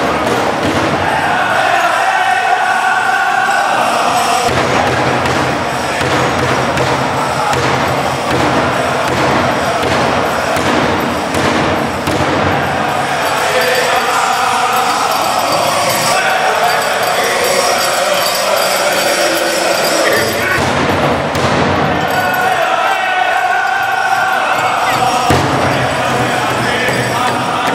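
Pow wow drum group singing an honor song over a steady beat on a large drum, the voices coming in phrases at the start, in the middle and near the end.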